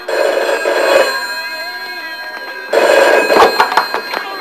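A telephone ringing twice, with a second-long ring at the start and another near the end.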